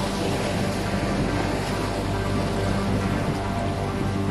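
Background music with sustained low notes laid over the steady wash of sea waves breaking on a rocky shore.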